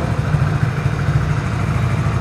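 Hero Passion+ motorcycle's 97cc air-cooled four-stroke single-cylinder engine idling steadily.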